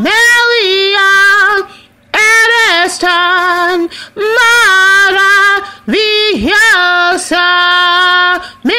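A woman singing solo and unaccompanied, in long held notes with pitch dips, phrase by phrase, with short breaks for breath about every two seconds.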